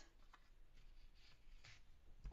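Near silence, with faint rustling of a cardstock strip being handled and turned.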